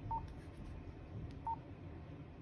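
Two short keypress beeps from a Motorola APX6000 portable radio as its front menu buttons are pressed, about a second and a half apart.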